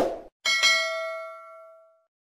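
Notification-bell 'ding' sound effect for a subscribe-button animation: a short click-like burst at the very start, then one bright bell-like ding about half a second in that rings out and fades over about a second and a half.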